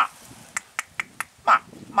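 A man calling a short "ma" at an alligator three times, with a run of sharp clicks about a quarter second apart between the calls.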